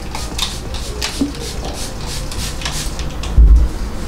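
Pump-spray bottle of face sunscreen mist being sprayed onto a face in a quick series of short hissing spritzes. A short low thump comes about three and a half seconds in and is the loudest sound.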